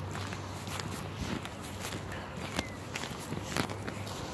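Footsteps of a person walking, soft irregular knocks about two a second, over a low steady hum.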